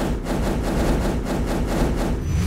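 Edited outro sound effect: a steady deep rumble with rapid crackling, starting suddenly.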